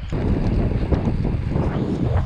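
Wind rushing over an action camera's microphone while riding a road bike, a steady low rumbling noise.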